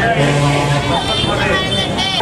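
Voices of a walking crowd of marchers talking over a busy street background, with a brief steady low tone in the first half second.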